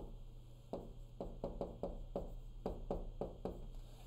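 Stylus tapping and clicking against the glass of a touchscreen whiteboard while words are written: about a dozen light, irregular taps, mostly after the first second.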